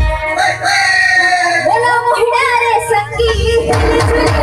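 Loud amplified live stage music: a high line that slides and wavers up and down over a steady held note, with low rhythmic beats coming in near the end.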